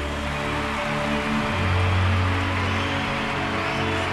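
Symphony orchestra with electronic dance backing playing sustained chords over a deep bass note, the bass changing pitch about a second and a half in, between sung lines.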